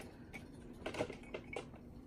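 A few light, scattered clicks and taps of small objects being handled as a china marker is picked up to mark the rod blank.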